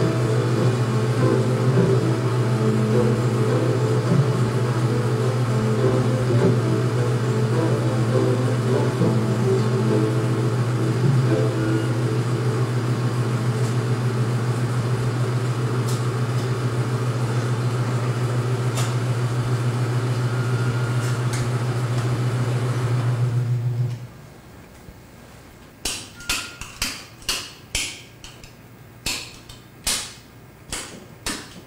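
The booth's 35mm projection equipment, a Century projector with its carbon-arc lamphouse, runs with a steady low hum that stops suddenly about 24 seconds in as it is shut down. Sharp clicks and knocks follow over the last few seconds as switches on the booth's electrical panel are worked.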